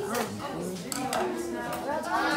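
Several voices chattering at once, with a few light clicks or clinks about a second in.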